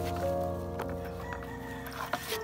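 Background music of sustained held notes and chords, changing note about a second in.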